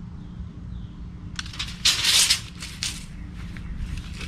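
A burst of rustling and clicking from about one and a half to three seconds in, loudest around the two-second mark: close handling noise as the tape measure is worked and carried up to the camera. A steady low hum sits underneath throughout.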